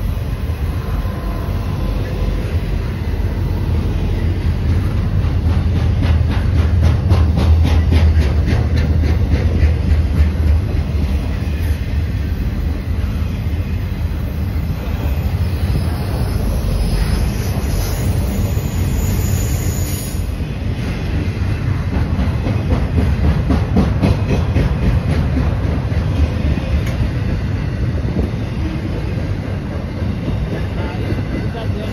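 Intermodal freight train of trailers on flatcars rolling past: a steady deep rumble with rapid clicking of wheels over the rails, louder in the first half. A high wheel squeal rises about halfway through and stops suddenly about two-thirds of the way in.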